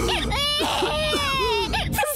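An infant crying in repeated high, wavering wails, with a frightened woman's voice alongside.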